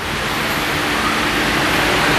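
A steady, even hiss of noise across the whole range, growing slightly louder, with a faint low hum underneath.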